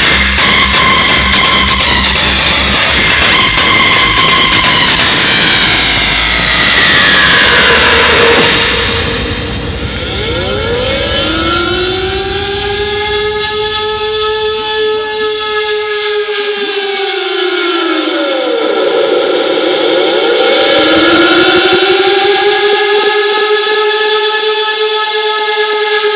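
Hardstyle dance music playing loud over a club sound system. A falling synth sweep comes before the beat and bass cut out about nine seconds in, leaving a beatless breakdown of sweeping synth tones that rise and fall in arcs and swell again near the end.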